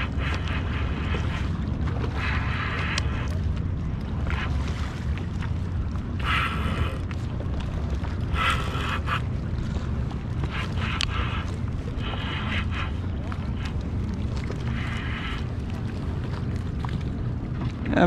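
Fishing reel buzzing in short bursts, about nine times, as line goes out or is cranked in while a hooked fish is fought, over a steady low rumble of wind on the microphone.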